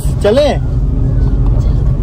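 Steady low rumble of a car's cabin while driving, engine and road noise heard from inside, with a brief voice near the start.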